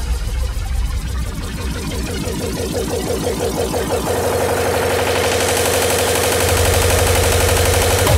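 Hardcore electronic music build-up: a fast roll of repeated distorted hits grows steadily louder, with a sustained tone coming in about halfway through and a high hiss rising in near the end.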